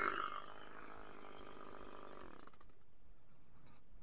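Top-handle chainsaw engine dropping from cutting speed to a steady idle, then stopping about two and a half seconds in.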